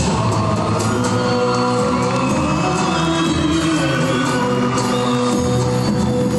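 Turkish folk dance music from the Kütahya region playing steadily as accompaniment for a folk dance, with a shift in the music just as it begins.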